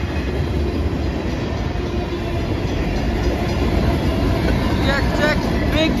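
Freight cars of a long CSX freight train rolling past close by, a steady loud rumble of steel wheels on the rails.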